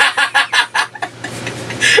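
Men laughing together in quick, repeated short pulses, about five a second, with a fresh burst of laughter near the end.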